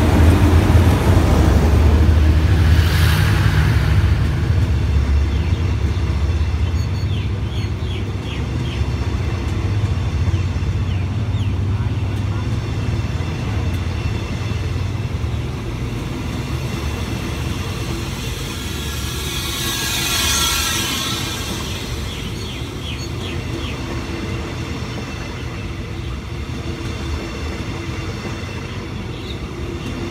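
Passenger coaches of an express train rolling past at speed, a steady rumble of steel wheels on rail. The heavier engine rumble of the Hitachi diesel-electric locomotive fades over the first few seconds. About two-thirds of the way through comes a brief louder rush of noise.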